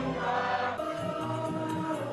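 A group of people singing together, holding long, steady notes. The sound changes about a second in.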